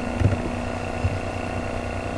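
Steady background hum with a few faint low thumps, in a pause between speech.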